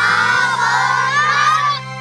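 A group of children calling out "thank you very much" together in unison, many young voices overlapping, ending a little before the two seconds are out.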